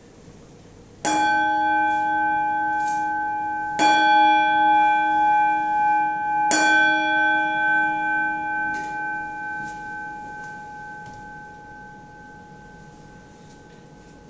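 Altar bell struck three times, about two and a half seconds apart, each stroke ringing on with several clear tones that slowly die away. This is the bell rung at the elevation of the host during the consecration at Mass.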